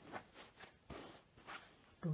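Faint rustling of saree cloth being handled and folded by hand, a few soft swishes.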